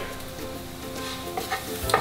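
Wooden spatula stirring and scraping browned tofu in a hot skillet, with a quiet sizzle from the pan.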